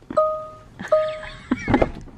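Two identical electronic chimes, each a steady single-pitch beep about half a second long, the second following the first about a second in.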